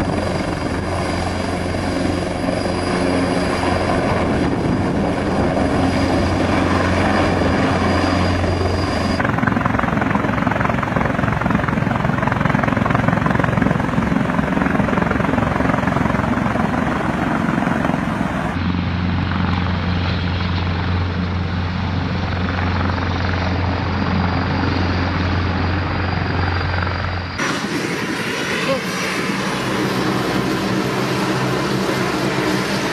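Eurocopter EC725 Caracal twin-turbine helicopter: continuous rotor and turbine sound heard from several clips joined together, the sound changing abruptly at each cut. A steady high whine runs through the first section. A last cut near the end moves to another helicopter.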